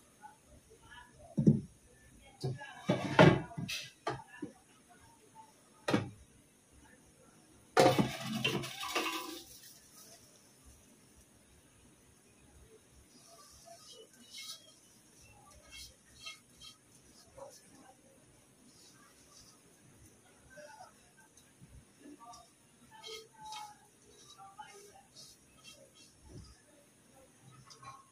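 Cookware clattering: a frying pan and a metal pot knock together several times in the first ten seconds, the loudest clatter about eight seconds in. After that come soft scraping and rustling as raw rice and lentils are scraped by hand from the pan into the pot.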